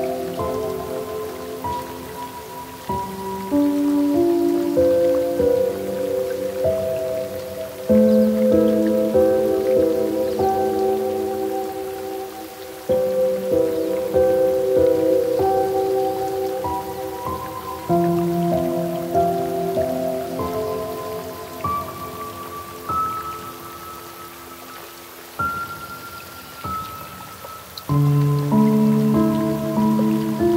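Slow, gentle piano music: soft chords struck every few seconds and left to ring and fade, over a steady sound of falling rain.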